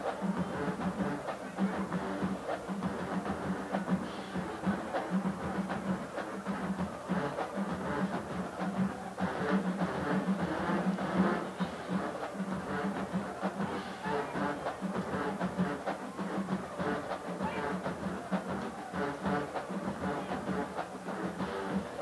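A marching band playing in the stands, drums and horns together.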